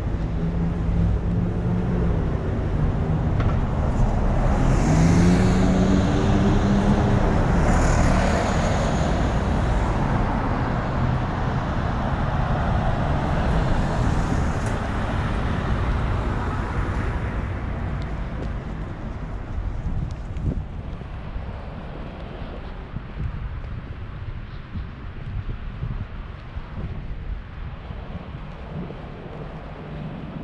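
Road traffic passing on the street: a motor vehicle's engine note rises as it accelerates in the first few seconds, and the traffic noise swells to its loudest early on, then fades away after about the middle, leaving quieter street background.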